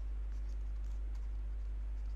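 Stylus writing on a pen tablet, with faint scratches and light taps, over a steady low electrical hum.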